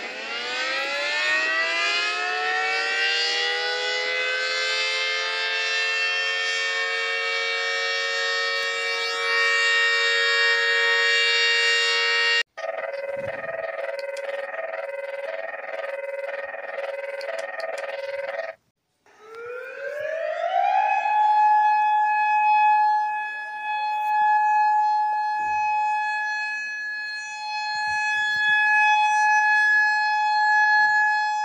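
Recordings of civil defense warning sirens played back to back. First a multi-tone siren winds up and holds a steady chord. It cuts off abruptly to a warbling alarm pattern that repeats evenly for about six seconds, and after a brief gap another siren winds up to a single steady tone.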